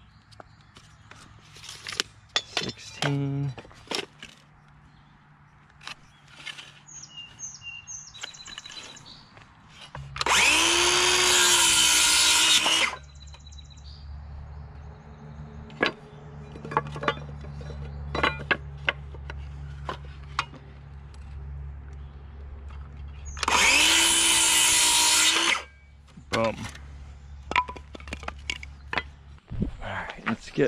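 DeWalt circular saw cutting through a wooden strapping board twice, each cut about two and a half seconds long, the motor whining up to speed and winding down at the end of each. The two cuts come about thirteen seconds apart.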